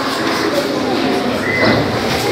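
Audience chatter in a large hall: many voices talking at once, with no single speaker standing out.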